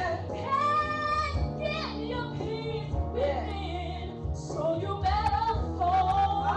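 A woman singing a gospel praise song into a microphone, her held notes wavering with vibrato, over a steady low musical backing.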